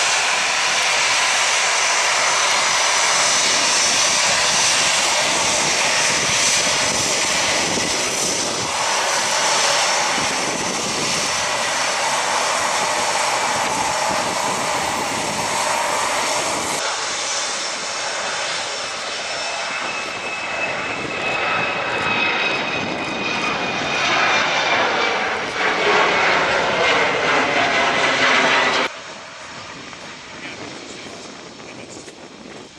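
Jet engines of an easyJet Airbus A320-family airliner running at taxi power close by: a loud, steady rush with high whining tones over it. The sound drops off suddenly near the end.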